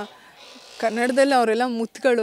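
Speech: a voice talking after a short pause, with no other sound standing out.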